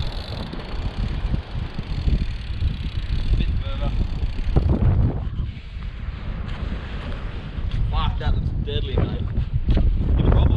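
Wind buffeting the microphone in a steady low rumble, with short snatches of voices about four seconds in and near the end.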